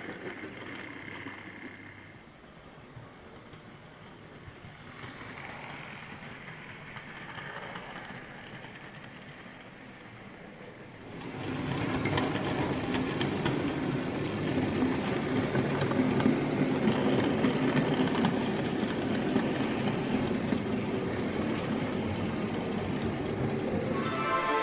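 OO gauge model freight train running on the layout track, hauled by a Hornby Class 29 diesel model: a steady running rumble of wheels and motor. About eleven seconds in it gets suddenly louder, with a steady motor hum, as the train runs closer.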